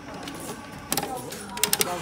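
The brass month-of-birth pointer dial on an Adelphi 'Madam Zasha' coin-operated fortune teller machine being turned by hand, clicking: one click a little before halfway, then a quick run of three or four sharp clicks near the end.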